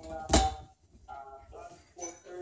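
One sharp knock about a third of a second in, from the home gymnastics bar as the gymnast shifts her weight in front support on it. A voice with music runs faintly underneath.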